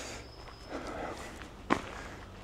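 Footsteps of a person walking on a dirt forest track, with one sharper step near the end.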